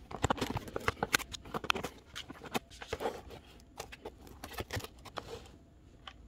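Cardboard product box being opened and its packed contents handled: a busy run of rustles, scrapes and light taps that stops about half a second before the end.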